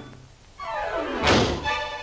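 Orchestral cartoon score: after a brief lull, a loud swelling hit that rises in pitch and peaks a little over a second in, with sustained musical notes around it.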